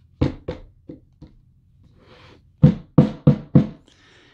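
Knocks from handling the hard plastic battery pack fitted with its rubber bumper. There are four quick knocks near the start, then four louder ones a little past the middle, about three a second.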